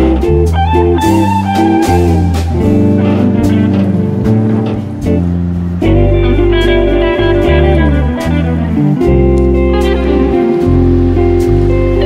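Instrumental background music with guitar over sustained low notes.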